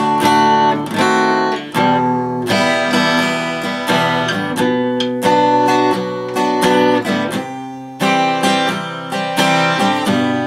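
Acoustic dreadnought guitar strummed in a steady rhythm, each chord ringing on into the next, the chords changing every few seconds.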